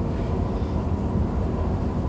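Steady low rumble of background noise with a faint, thin steady tone above it; no other event stands out.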